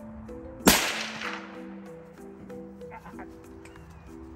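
A single rifle shot about a second in, sharp and by far the loudest sound, tailing off with an echo over about half a second. Background music with held notes plays under it.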